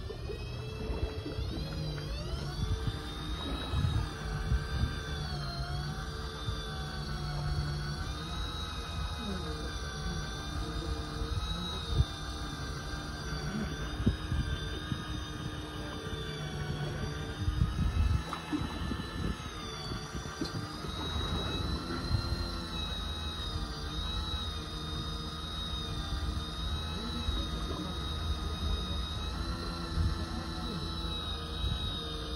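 Electric fishing reel motor winding in line against a hooked fish: a whine that rises in pitch about a second in as the winding speed is turned up, then wavers up and down with the pull on the line, over a low rumble.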